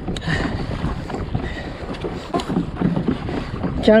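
Wind buffeting the microphone over choppy ocean water slapping against a fishing kayak, with a few faint scattered clicks.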